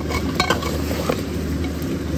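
Spiced pork pieces sizzling in a metal pot while a spoon stirs them, clinking against the pot a few times in the first half-second, over a steady low hum.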